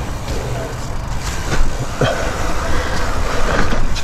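Mountain bike riding fast down a dirt and rock singletrack: a steady low rumble of wind on the camera microphone and tyres rolling over dirt, with sharp knocks and rattles as the bike hits rocks and bumps.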